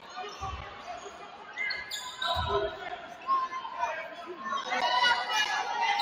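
Basketball bouncing on a hardwood gym floor: two dull bounces about two seconds apart, in a large echoing gym.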